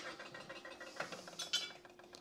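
Faint light metal clicks and scrapes as the lid of an aluminium bacon-grease can is lifted off and handled, over a faint steady hum.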